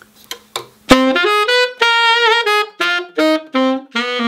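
Yanagisawa WO1 tenor saxophone with a Syos mouthpiece playing a jazz phrase. A few soft key clicks come first, and the playing starts about a second in. It is a run of notes with one held note bent with vibrato, then short detached notes.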